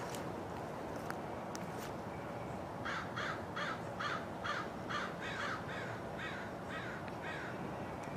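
Crows cawing: a rapid run of about a dozen short caws, roughly three a second, starting about three seconds in and growing fainter toward the end.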